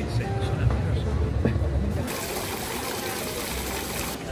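Street ambience with faint voices over a low rumble. About halfway through, a cut brings in the steady splashing of a stone fountain's jets falling into its basin.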